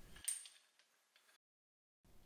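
A faint, brief metallic clink from a steel screw bar clamp on a steel table about a third of a second in, with faint ticks after it, then dead silence.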